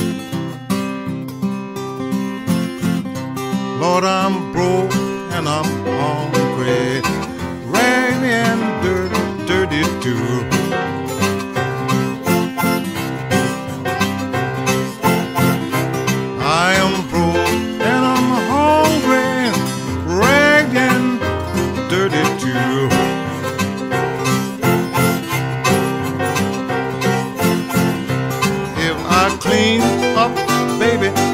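Acoustic blues played without singing: a fingerpicked acoustic guitar keeps a steady accompaniment while a harmonica plays bent, arching lead phrases over it.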